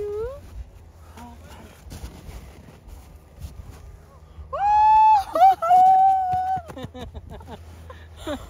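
A woman's long, high-pitched squeal of delight about halfway through, held for a couple of seconds with a brief break, then breaking into laughter.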